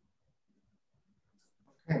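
Near silence on a video-call recording, then a voice says "Okay" right at the end.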